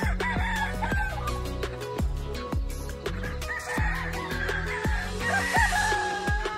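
Gamefowl roosters crowing over background music with a steady beat: a short crow at the start and a longer one beginning a little past halfway.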